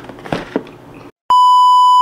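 A few soft clicks, then after a brief silence a loud, steady, single-pitch test-tone beep: the 'bars and tone' sound of a TV colour-bars test-pattern effect.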